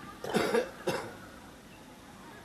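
A man coughs twice close to the microphone: a longer cough about a quarter second in, then a short one just before the one-second mark.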